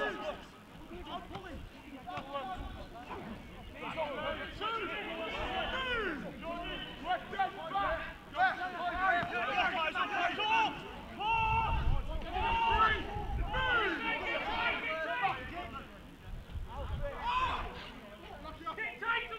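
Voices shouting and calling to one another across a rugby league pitch during open play, overlapping in short bursts. A low rumble runs underneath for a few seconds midway.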